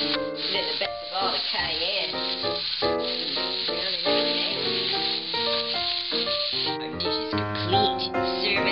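Background music with a run of held, changing notes, with ground beef sizzling in a frying pan beneath it.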